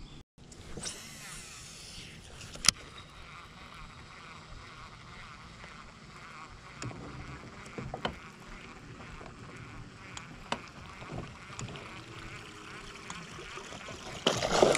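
Quiet outdoor ambience on a small boat on a pond, with a few scattered sharp clicks, the loudest about three seconds in.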